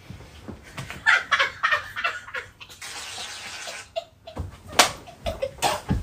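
A person's short vocal sounds and rustling, then an even hiss lasting about a second, followed by a few sharp slaps toward the end.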